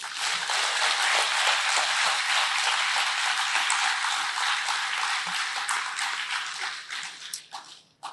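Audience applauding: steady, dense clapping that thins to a few scattered claps and dies away near the end.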